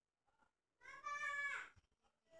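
A single drawn-out, high-pitched vocal call, about a second long, starting just under a second in, holding its pitch and then falling away at the end.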